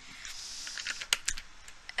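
A soft breathy exhale after a drink from a plastic bottle, then a quick run of light clicks about a second in as the bottle is handled.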